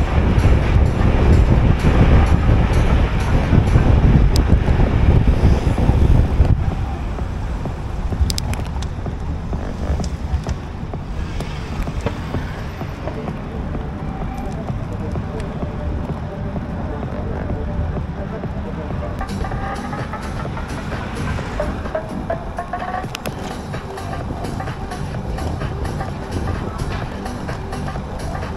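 Wind rumbling on the DJI Action 3's microphone during a bike ride, heaviest in the first six seconds and then easing to a steadier rush, with background music playing throughout.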